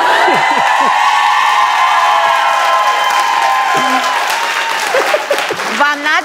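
Studio audience cheering: many voices join in one long, high, held cry over applause and laughter. The cry dies away about four and a half seconds in, leaving laughter and chatter.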